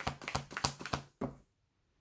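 Tarot cards being shuffled in the hands: a quick run of light card clicks and snaps that stops abruptly about a second and a half in.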